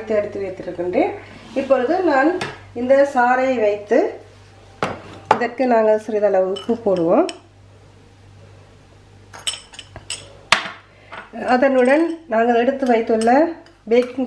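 A metal spoon clinking against glass and ceramic bowls as ingredients are spooned out: a few sharp clinks, clustered about ten seconds in, between stretches of a woman talking.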